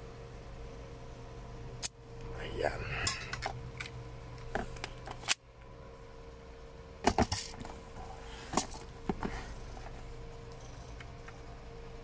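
WE Hi-Capa 5.1 gas blowback airsoft pistol magazine being charged from a gas can, with a sharp click about two seconds in and a short hiss after it. Then sharp plastic and metal clicks, a cluster at about seven seconds and single ones after, as the pistol and magazine are handled.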